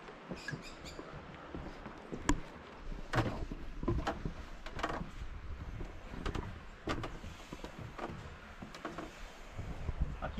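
Footsteps on wooden deck boards: a series of hollow knocks and thuds, about one a second, beginning about three seconds in, over a faint outdoor background.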